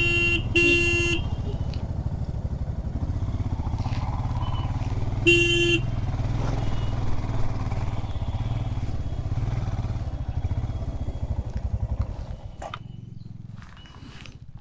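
Motorcycle engine running at low speed with an even beat, with three short horn honks: two in the first second and one about five seconds in. The engine drops quieter near the end.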